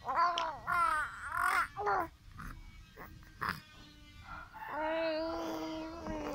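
Baby cooing and babbling: several short calls that rise and fall in pitch in the first two seconds, a quieter stretch with a few soft clicks, then one long held vowel near the end.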